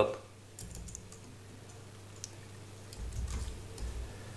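Computer keyboard typing: a few scattered keystrokes, over a low steady hum.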